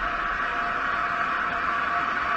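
Steady synthesized rushing drone with a faint held tone beneath it, a sustained sound effect in an electronic logo intro.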